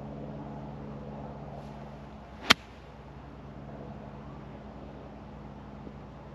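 Golf club striking the ball on a chip shot of about fifty yards: one sharp click about two and a half seconds in, over a steady low background hum.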